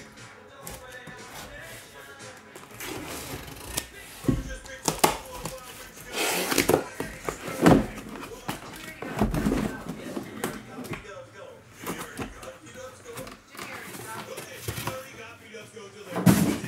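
A cardboard shipping case being opened and handled by hand, with scattered knocks, scrapes and rustles, the loudest in the middle stretch, over faint background music.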